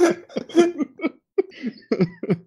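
A person coughing several times in short bursts.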